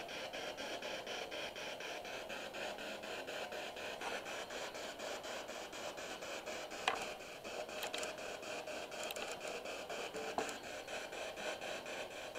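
Static from a spirit box, a handheld radio scanning rapidly through stations, played through a small external speaker. The hiss is chopped into a fast, even pulse several times a second as the radio steps from station to station, with a couple of brief clicks.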